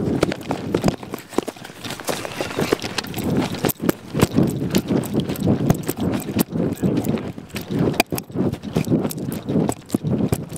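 Footsteps of someone running on grass with a hand-held camera, its microphone picking up a rapid, irregular run of thuds, knocks and handling bumps.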